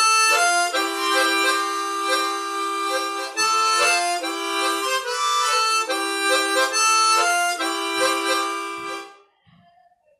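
Chromatic harmonica played with tongue slapping (vamping): a melody in octaves while the tongue rhythmically blocks and unblocks the middle holes, so the chords between the octave notes pulse under it. The phrase ends about nine seconds in.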